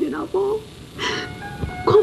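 A woman crying, her tearful voice wavering and breaking, over background music with held tones; about a second in, a sharp sobbing intake of breath before her crying voice resumes.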